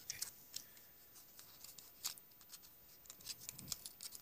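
Irregular faint clicks and light taps of small hard objects being handled, with a soft low thud about three and a half seconds in.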